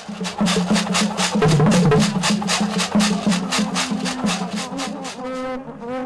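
Large carved wooden slit drums struck with wooden sticks in a fast, even rhythm, with a steady low tone beneath the strokes.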